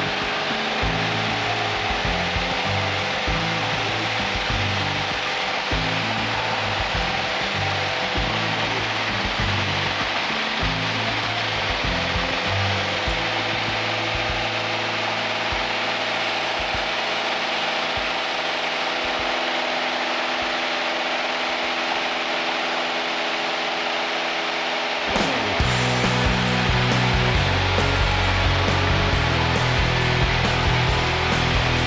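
Piper Warrior's four-cylinder piston engine and propeller droning steadily at climb power, heard inside the cabin during the takeoff climb. Background music plays over it and becomes louder, with a steady beat, about 25 seconds in.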